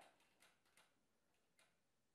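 Near silence: room tone with a few very faint, short clicks.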